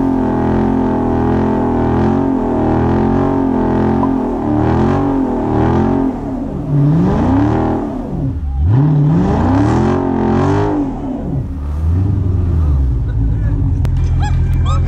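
Dodge Charger's Hemi V8 held at high revs during a burnout, the rear tyres spinning in place. About halfway through the revs swing up and down three times, then settle back to a steady high pitch.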